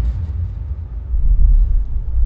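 A loud, deep low rumble, the kind of bass rumble laid into a film's soundtrack after an impact, swelling slightly about a second and a half in.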